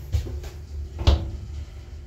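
Inside a small TKE e-Flex elevator car travelling down, two knocks over a low rumble. The second knock, about a second in, is the louder.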